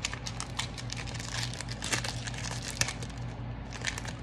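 Foil-lined Pokémon booster pack wrapper crinkling in the hands as it is worked open, a dense run of sharp crackles throughout.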